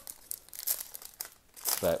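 Foil trading-card pack wrapper crinkling in a few short crackles as it is torn and peeled open by hand.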